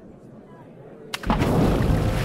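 A loud splash about a second in, running straight into a rushing burst of bubbles: toy scorpions plunging into water. Before it there is only faint room tone.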